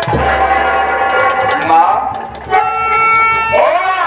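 Live folk-theatre music: a heavy drum stroke at the start, then long held chords with a melody that slides up and down in pitch, about two seconds in and again near the end.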